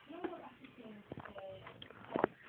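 Faint, brief wordless vocal sounds from a person, with a few light clicks of handling.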